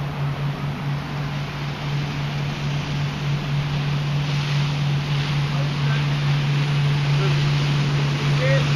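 Boat motor running with a steady low hum, with wind buffeting the microphone; a rushing noise grows louder from about halfway through.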